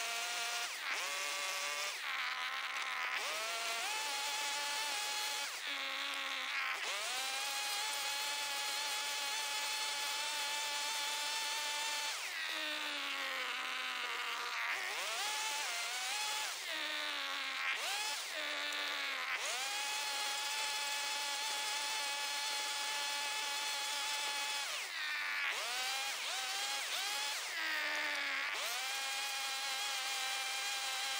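Makita DCS231T two-stroke top-handle chainsaw running at high revs as it cuts notches in a treated pine plank. The engine note repeatedly sags and climbs back as the chain bites into the wood or the throttle is eased, with a long dip about twelve seconds in.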